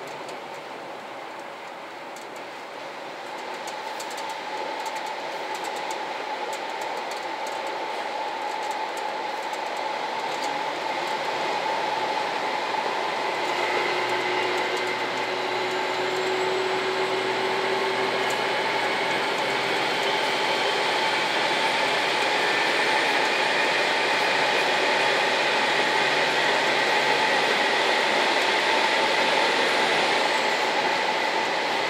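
JR Shikoku 2000-series diesel express railcar running through a tunnel, heard from inside the front car: a steady mix of engine and wheel-on-rail noise with a few steady whining tones. It grows louder over the first dozen seconds, then holds.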